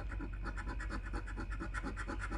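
A coin scraping the latex coating off a paper scratch-off lottery ticket in quick, even back-and-forth strokes, about six a second.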